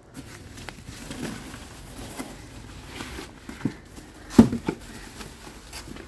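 Handling noises from items being taken out of a scooter's plastic under-seat storage compartment: a few light knocks, the sharpest about four and a half seconds in, with soft rustling.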